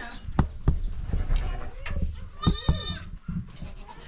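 Goats bleating in a crowded stone shed, with a long quavering bleat about halfway through. Two sharp knocks come in the first second.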